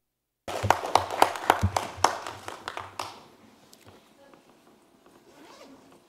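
The sound cuts out completely for half a second. Then comes about two and a half seconds of close rustling with many sharp clicks and light knocks, dying away after about three seconds. This is typical of handling noise and papers or objects moved near a desk microphone.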